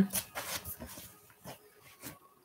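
Short rustles and light knocks of movement close to the microphone, a few irregular ones that fade away.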